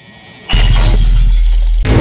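Intro sound effect: a rising whoosh, then about half a second in a sudden heavy hit with a deep held boom and a glass-shattering glitter above it, giving way to music near the end.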